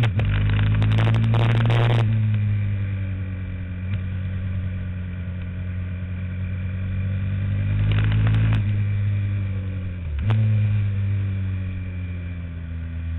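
Onboard sound of a racing kart engine at speed. Its note sinks sharply as the throttle is lifted just after the start and again about ten seconds in, then climbs back under power. A rough, crackling noise lies over it for the first two seconds and again about eight seconds in.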